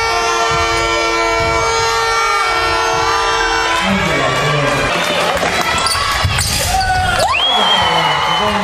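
A basketball bouncing on a hardwood court during play, with crowd noise in a large hall. A long, steady horn-like tone holds for the first half and stops about three and a half seconds in; near the end a sharp rising whistle-like call levels off high.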